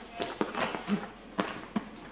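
A cardboard box being handled: a series of about six light knocks and taps, irregularly spaced.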